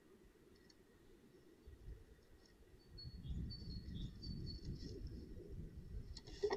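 Faint, short high chirps of small birds, with a low, uneven rumbling on the microphone that grows louder from about three seconds in.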